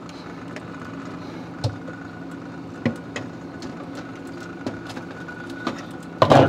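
Steady hum of a GE top-freezer refrigerator running, with a few sharp plastic clicks and knocks as the freezer's plastic back panel is handled and pried loose.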